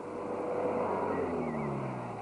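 A minibus driving past, its engine growing louder and then falling in pitch as it goes by.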